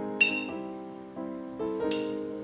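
Glass water jar clinking twice, sharp ringing clinks about a fifth of a second in and again near the end, over soft piano background music.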